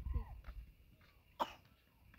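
A person's voice trailing off at the start, then a single short cough about one and a half seconds in.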